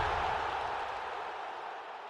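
The reverberant tail of a branding sting's hit-and-whoosh sound effect, dying away steadily.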